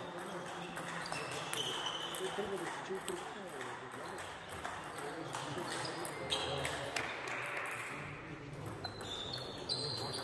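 Background chatter of voices in a large sports hall, with scattered faint clicks of table tennis balls on bats and tables.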